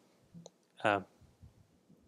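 A pause in a man's speech: a faint short click about half a second in, then one short hesitant "uh" just before the middle.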